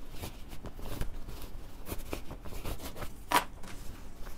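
Cotton fabric rustling and scrunching as hands gather it along the casing, working a safety pin and elastic through the bias tape in a string of irregular soft scrapes. One sharper, louder scrape comes a little over three seconds in.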